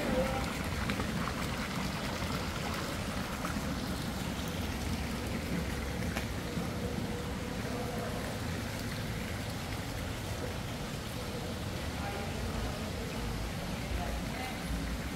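Steady rushing ambient noise with no distinct events.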